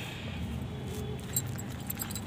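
Quiet rustling with a few light clicks and clinks as a matted, root-bound mint clump and loose soil are handled and set down.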